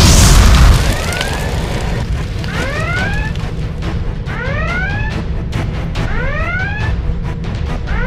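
Sound-effect explosion boom at the start, loudest in the first second, followed by a repeating rising alarm whoop about every two seconds with sharp crackling hits, over background music.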